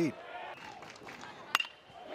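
Faint ballpark crowd ambience, then about one and a half seconds in a single sharp ping of a metal bat striking the pitch, the contact that sends a line drive to left field for a base hit.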